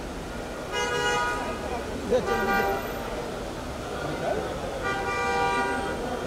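Car horns honking three times, each honk a steady tone under a second long, over crowd chatter and traffic noise.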